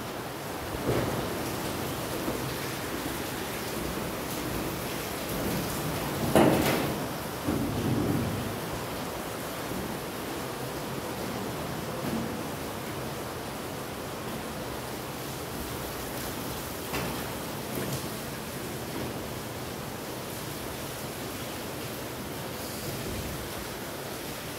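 A steady background hiss, broken by a few scattered rustles and thumps. The loudest comes about six seconds in.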